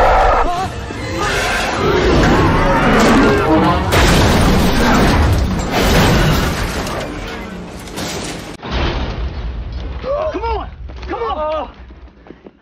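Action-film soundtrack: dramatic music under heavy booms and crashes. About two-thirds of the way through the sound cuts to a quieter stretch, with two rising-and-falling vocal cries near the end.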